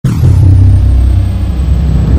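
Intro sound effect for a logo reveal: a deep rumble that hits suddenly and carries on steadily, with a thin high whistle falling in pitch over the first half-second.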